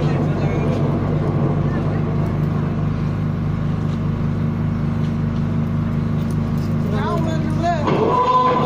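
A steady low engine hum from the parked LED screen truck runs throughout. Voices from the screen's loudspeakers play over it and come up more clearly about a second before the end.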